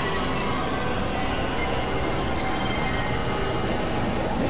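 Experimental synthesizer drone-noise music: a dense, steady wash of noise with thin, high sustained tones over it. About two seconds in, one high tone slides down and then holds.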